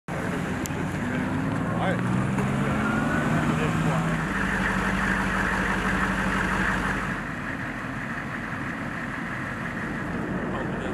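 Engine of a tracked over-snow carrier running. Its pitch shifts in the first two seconds, then holds steady, and it drops away about seven seconds in.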